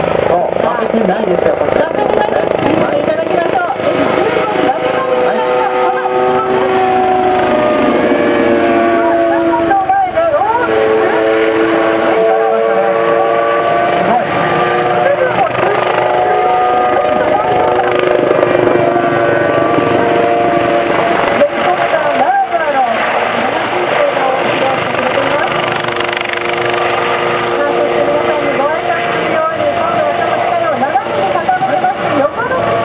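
Kawasaki OH-1 twin-turboshaft helicopter flying low display passes: a steady turbine-and-rotor whine made of several stacked tones. The pitch bends and dips as it sweeps by, about ten seconds in and again about twenty-two seconds in.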